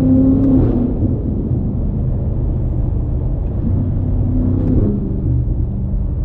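BMW M5 Competition's twin-turbo V8 running under way, heard inside the cabin over steady road rumble. The engine note swells briefly at the start and again about four to five seconds in.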